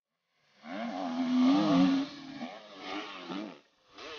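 Dirt bike engine revving, its pitch rising and falling with the throttle. It starts about half a second in, cuts off briefly near the end, then starts again.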